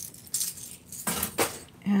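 Costume jewelry jangling and clinking as it is handled: a few sharp clinks, then a longer jangle just after a second in. The pieces are gold-tone metal settings with cream stones, on a lightweight statement necklace.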